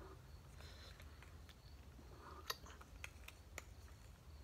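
Near silence: room tone with a few faint, short clicks of light handling, the sharpest about two and a half seconds in.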